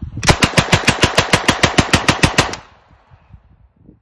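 M3 "grease gun" .45-calibre submachine gun firing one full-auto burst of evenly spaced shots at its slow rate of fire, about eight rounds a second for a little over two seconds. The shots echo briefly after the burst stops.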